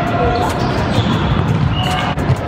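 Indoor volleyball rally in a gym: players' voices calling out, with sharp smacks of the ball being hit about half a second in and near the end.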